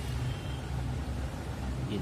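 A steady low background rumble with no distinct event.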